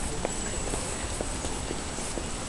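Footsteps on hard ground, a light click roughly every half second, over steady background noise.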